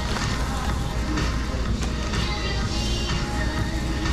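Background music with a steady low bass, under the crinkling rustle of plastic carrier bags being handled and opened.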